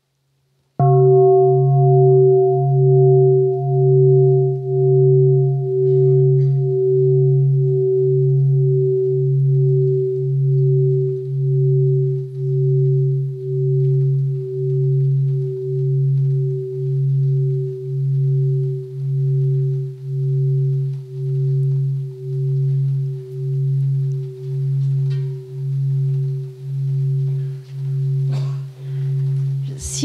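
A large bowl bell of the kind used as a mindfulness bell, struck once about a second in. It rings on with a low, steady hum that wavers slowly and evenly and fades only a little, inviting a pause for mindful breathing.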